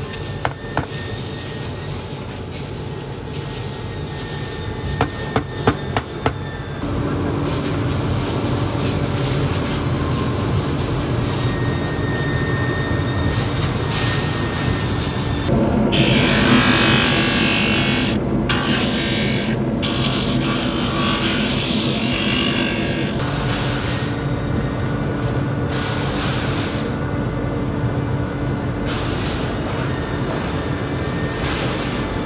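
Sharp taps and clicks of hand-lasting with pincers and tacks over a boot last, clustered near the start and again around five to six seconds. Then a workshop machine starts running with a steady hum, and from about halfway through leather is held against a spinning abrasive wheel, giving a loud grinding rasp for several seconds.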